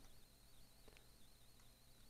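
Near silence: faint steady hiss, with one faint click about a second in.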